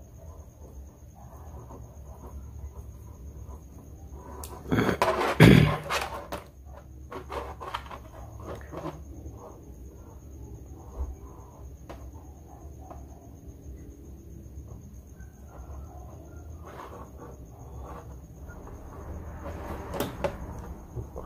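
Faint scraping and handling noises of stripped copper wire strands being twisted by hand around a small steel screw, over a low hum and a faint steady high-pitched whine. About five seconds in comes one loud noisy burst lasting about a second.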